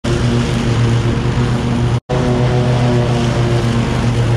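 Toro TimeCutter SS5000 zero-turn riding mower's engine running steadily as the mower drives across grass. The sound cuts out for an instant about two seconds in.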